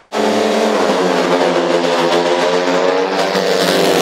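Racing engine sound effect held at steady high revs. It cuts in abruptly just after the start.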